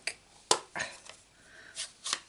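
A sharp plastic click about half a second in, then a few softer clicks and handling noise: a craft ink pad's plastic case being snapped open and handled.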